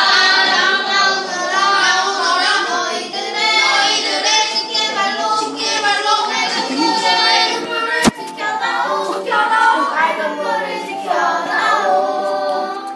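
A small group of children singing together. There is a single sharp click about eight seconds in.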